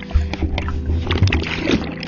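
Water rushing and bubbling against an underwater action camera: a low rumble with many short clicks and pops from bubbles and splashes, with several steady tones beneath.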